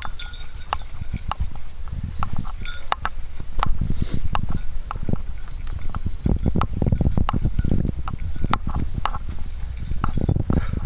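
Footsteps on a dirt forest trail: irregular thuds and sharp clicks with a low rumble, heaviest a little past the middle.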